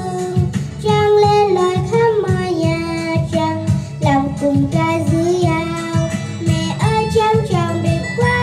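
A young girl singing a melody of held notes into a microphone over musical accompaniment with a steady beat.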